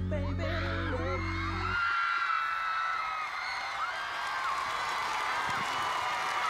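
A pop song's final chord is held with a heavy bass and cuts off about two seconds in. It leaves a large concert crowd cheering, with high screams rising and falling over the noise.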